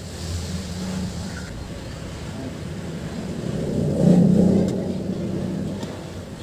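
A motor vehicle engine passes, building up, loudest about four seconds in, then fading, over a steady low hum.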